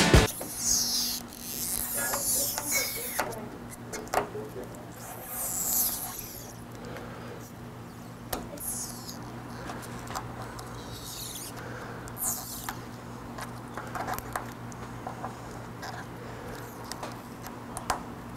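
Plasti Dip rubber coating being peeled off a car's chrome badge lettering: several short, high crackling tearing bursts with small clicks in between. A low steady hum runs underneath.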